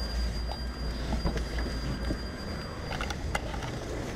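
Car engine running at low revs, a steady low rumble that eases a little about halfway through, with a few light knocks and clicks.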